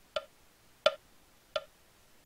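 Metronome count-in: three short, evenly spaced clicks at 86 beats a minute, counting in the playback of a vocal quartet score.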